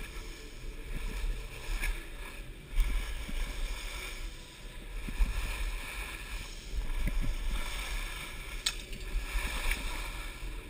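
Skis hissing and scraping over groomed snow during a steady descent, with a low rumble of air buffeting the body-mounted camera's microphone and a sharp click near the end.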